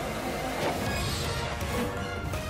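Background score music of an animated action cartoon, with a brief rushing sound effect swelling about half a second in.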